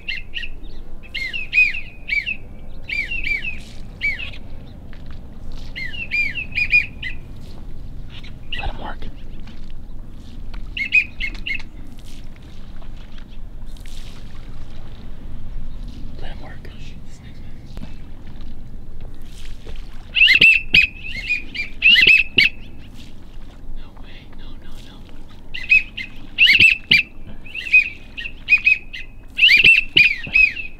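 Short bursts of high, chirping whistled calls, repeating on and off, loudest about twenty seconds in and again near the end.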